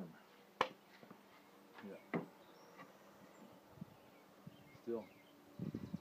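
Loose cedar boards knocking against each other as they are handled on a wooden table top: one sharp knock about half a second in and a softer one about two seconds in, over a faint steady hum.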